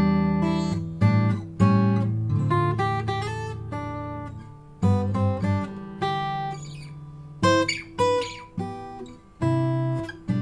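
Olson SJ steel-string acoustic guitar with a cedar top and Indian rosewood back and sides, played slowly: chords struck every second or so and left to ring and fade, with single melody notes picked between them.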